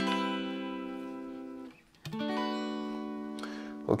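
Fender Stratocaster electric guitar played completely clean, with no effect switched on and at a fairly low output level: a chord strummed and left to ring, stopped about a second and a half in, then a second chord strummed and left to ring.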